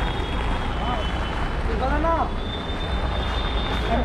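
Steady low rumble of vehicle engines and street noise, with two brief bursts of voices, about one and two seconds in.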